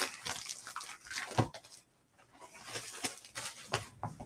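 Rustling and crinkling as a plastic-wrapped comic book pack is opened and the comics inside are handled, in irregular short crackles with a brief pause about halfway through.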